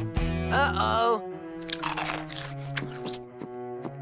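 Cartoon background music with a crunching, munching sound effect of a boy eating snacks, and a short voiced sound about half a second in.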